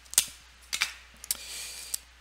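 Sellotape being handled: a few sharp clicks and crackles, then a steady rasp for about half a second near the end as tape is peeled off, ending with a snap.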